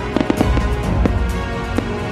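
Fireworks going off in a salute, several sharp bangs in quick succession, heard over background music with sustained tones.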